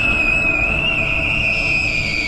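A single long, high-pitched scream held on one slightly wavering note, voiced for a crying child character.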